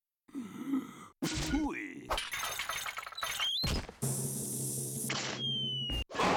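Cartoon sound effects over music: a character's voice at the start, then a run of crashes, breaking and clattering, and near the end a thin whistle falling in pitch as an anvil drops.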